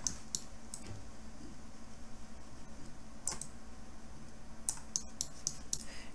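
Faint, scattered clicks from a computer mouse and keyboard, a few at a time with a small cluster near the end, over a low steady electrical hum.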